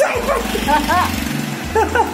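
Background music with a steady low beat, over which come short yelps that rise and fall in pitch: a group of two or three just before a second in, and another group near the end.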